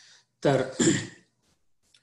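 A man clearing his throat once, a short two-part rasp lasting under a second about half a second in, after a quick intake of breath.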